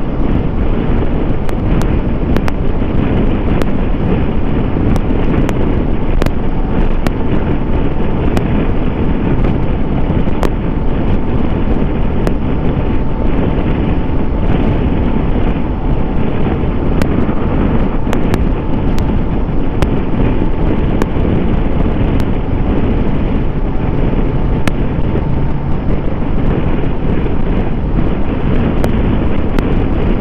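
Wind rushing over the microphone, mixed with the Kawasaki Versys 650's parallel-twin engine and tyre noise, at a steady cruise of about 90 km/h. Scattered faint clicks run through it.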